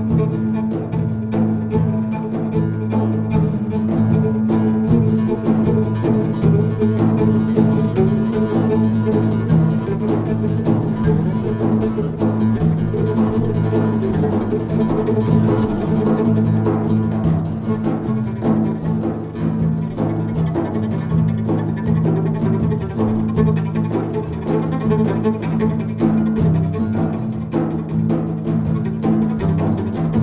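Viola, oud and frame drums (tar and mazar) playing together: a bowed viola line over plucked oud, with hand-struck frame drums. The music is steady and continuous, without pauses.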